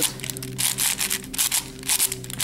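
Plastic layers of a Shengshou 6x6 speed cube being turned quickly by hand: a run of irregular clicks and scrapes. The turning has a heavy, slightly crisp feel from the internal pieces moving with each turn.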